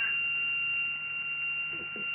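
Homemade spark-gap wireless transmission rig running with a steady, really high-pitched tone over a low hiss.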